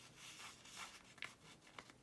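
Faint rustling and light scraping of a paper sticker sheet being handled, with small ticks as stickers are picked at with tweezers.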